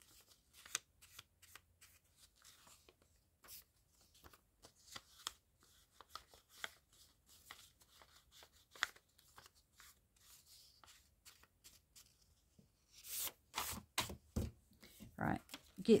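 Ink blending tool dabbing along the creased edge of a paper strip: a run of soft, quick taps with paper rustling. Louder paper handling near the end as the strip is laid on the page.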